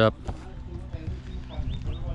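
Work boots stepping and scuffing on an asphalt shingle roof, a few faint irregular steps.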